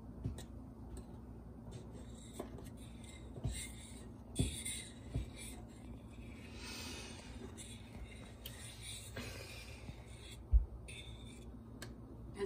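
Thick pot of red beans and rice simmering: scattered soft pops of bubbles bursting through the stew over a steady low hum, with a sharper thump about ten seconds in.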